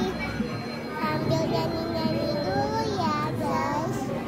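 Young girls' voices, talking and singing in a sing-song way.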